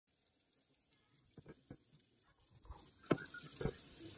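Water running from a kitchen faucet into a sink, growing louder from about halfway in. Several short knocks as a stoneware baking pan is handled in the sink, the loudest about three seconds in.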